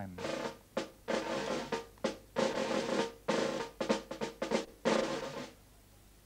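A snare-type drum played with sticks in a series of short rolls and quick beats for about five seconds, stopping half a second before the end.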